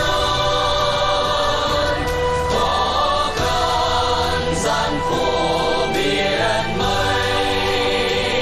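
Mixed choir of men and women singing a Vietnamese song.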